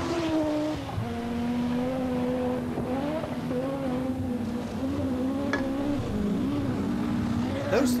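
Group B rally car engines running hard on a gravel stage, the engine note rising and falling as the cars pass.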